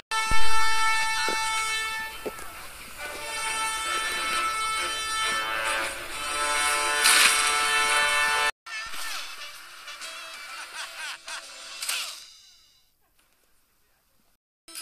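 Film soundtrack music with sustained horn-like chords, cut off abruptly about eight and a half seconds in; quieter sound follows and fades to silence near the end.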